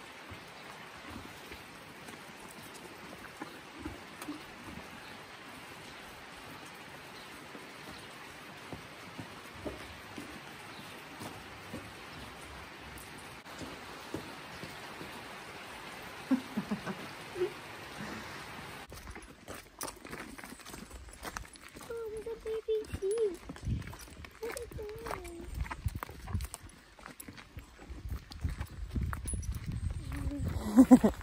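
A steady hiss for the first two-thirds. Then a pony's hooves clop irregularly on a muddy track, with low rumbling from wind or handling and a few faint pitched voice-like sounds.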